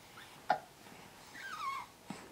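A young baby cooing: one short, wavering coo that falls in pitch about one and a half seconds in, after a brief click near half a second.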